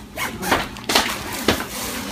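A fabric duffel bag being handled and packed: a few short rustles and scrapes, the sharpest about a second and a second and a half in.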